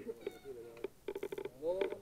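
Short snatches of men's speech, with one stretch of buzzy voice.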